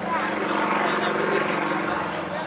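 Propeller aerobatic plane's piston engine and propeller droning steadily as it climbs, swelling slightly louder just after the start.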